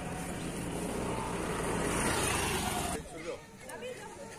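A motor vehicle running close by, its noise building for about three seconds and then stopping abruptly, followed by faint voices of a crowd.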